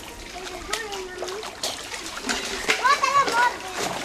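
Children bathing in a pond, splashing the water and calling out to each other in high voices, in short bursts about a second in and again near the end.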